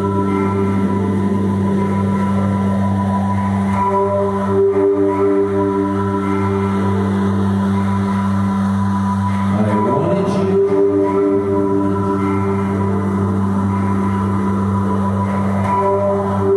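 Electronic synthesizer drone music: low tones held steadily under higher sustained notes that fade in and out, with a gliding pitch sweep about ten seconds in.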